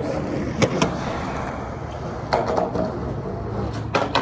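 Skateboard wheels rolling on concrete, with a few sharp clicks, and a sharp snap just before the end as the tail is popped for a trick.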